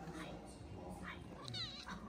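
Small kitten mewing: a few short, high, thin mews, with a longer, wavering mew near the end.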